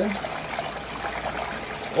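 Water pumped by a submersible pump running steadily down a metal sluice box over its mat and splashing into a tub: a continuous rush of water.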